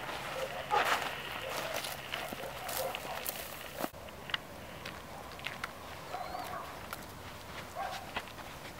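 Footsteps of several people walking on pavement, a run of irregular scuffs and clicks, the sharpest about 1, 3 and 4 seconds in. Faint animal calls sound in the background.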